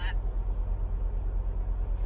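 Steady low rumble of a truck's diesel engine heard inside the cab, pulsing evenly at about eight beats a second.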